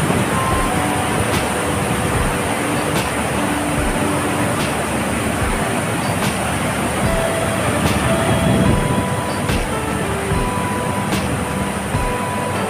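Water rushing over a dam spillway and churning in the river below, a loud steady rush. Background music runs over it: a few held melody notes and a soft beat about every second and a half.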